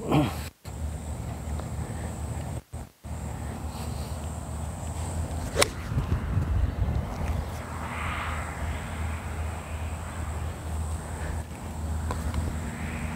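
A golf club striking a ball on a full swing: one sharp crack of impact about five and a half seconds in, over a steady low rumble.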